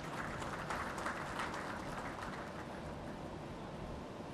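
Light applause from an audience, thinning out after about two seconds, over a steady low background rumble.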